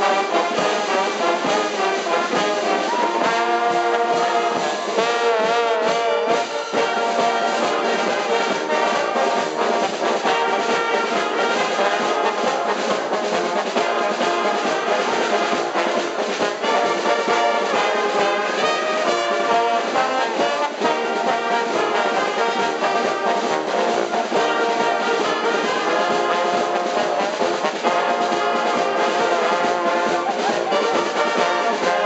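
Carnival brass band playing live: trombones, trumpets, saxophones and a tuba over a steady bass-drum beat, with a held, wavering note about four seconds in.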